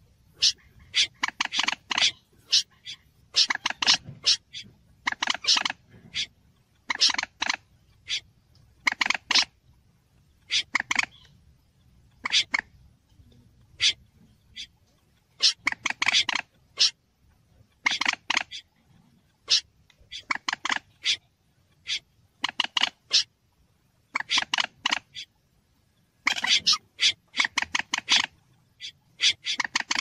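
Recorded bird-trapping lure calls of moorhen and snipe played together: clusters of short, sharp notes repeated every second or so, with a brief lull about halfway through.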